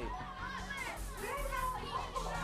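Background music with a steady low bed under children's voices calling out.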